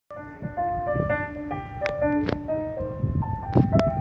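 Electronic keyboard playing an amplified single-note melody, each note held a fraction of a second before the next, with a few sharp clicks over it.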